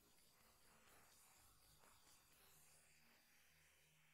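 Near silence: only a faint hiss remains in a filtered a cappella vocal track after the singing has ended.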